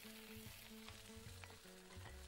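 Choi sum sizzling faintly in hot oil in a wok, just after the greens are tipped in, with a few light ticks. Soft background music with held notes plays underneath.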